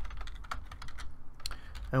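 Computer keyboard typing: a few separate, irregular keystrokes.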